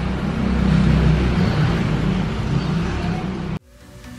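Steady low rumbling background noise with hiss, like road traffic, that cuts off suddenly near the end, where electronic music begins quietly.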